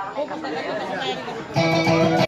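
Voices and crowd chatter over soft plucked-string playing. About one and a half seconds in, the amplified kutiyapi, the Maranao two-stringed boat lute that accompanies dayunday singing, comes back in louder with steady ringing notes.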